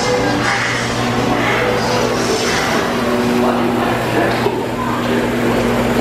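Cartoon dialogue playing from overhead TV monitors over a steady low hum.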